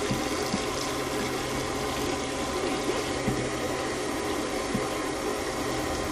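Water running steadily from a garden hose into shallow water, splashing around the mouth of a manatee drinking from it, a constant rush with a low steady hum underneath.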